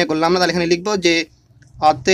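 Only speech: a man talking, with a pause of about half a second shortly after the middle and more speech just before the end.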